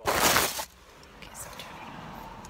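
Smartphone being picked up and handled, fingers rubbing and scraping over its microphone in a loud burst for about the first half second, then dropping to a low background hush.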